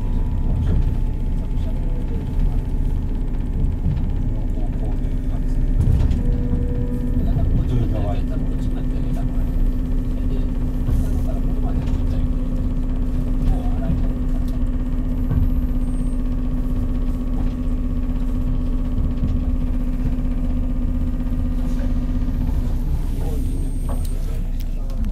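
Inside a 183 series electric limited express train: a steady running rumble with a constant low hum as the train draws alongside a station platform.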